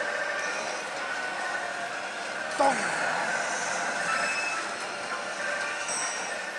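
Pachislot parlor din: a steady wash of machine noise and electronic effect sounds from the slot machines, with a brief, louder falling electronic tone about two and a half seconds in.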